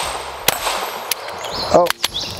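Walther Q5 Match 9mm pistol firing: a loud shot about a quarter of the way in and a fainter report about halfway through. The slide does not lock back on the last round because the shooter's thumb rides the slide release, which he calls his own fault, not the gun's.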